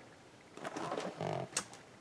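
Cardboard cereal box being turned over in the hand: soft scuffs and a few light clicks, with a brief low hum a little past a second in.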